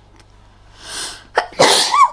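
A woman sneezes once: a drawn-in breath about a second in, then a loud sneeze near the end.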